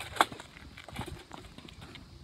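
Scattered light clicks and knocks of a wire ball cart full of tennis balls being pushed over paving, with one sharp knock just after the start.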